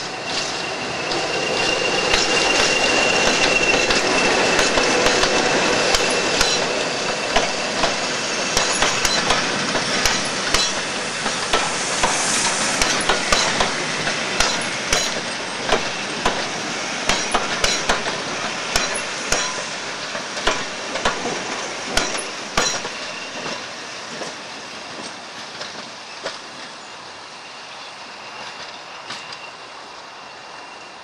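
Class 20 diesel locomotive passing close by at the head of a coach train. Its engine noise is loudest in the first few seconds, with a high steady whistle. The coaches then roll past with rapid sharp clicks of wheels over rail joints, and the sound fades toward the end.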